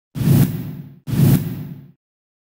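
Two identical whoosh sound effects from a TV news channel's logo ident, about a second apart. Each starts suddenly and fades away over most of a second.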